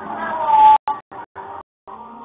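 A drawn-out, high-pitched cry lasting under a second, holding one pitch and growing loudest just before it cuts off, followed by a few short voice-like fragments.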